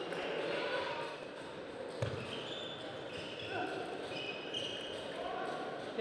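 A table tennis ball struck once with a sharp crack about two seconds in, among short high squeaks and a murmur of voices in the hall.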